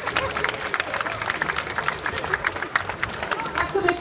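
Audience applauding: dense, irregular hand clapping with crowd voices mixed in.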